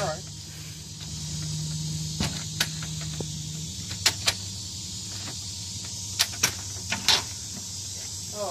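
Latch and handle of a glass storm door clicking as it is worked: several short sharp clicks, mostly in pairs, over a steady buzz of insects.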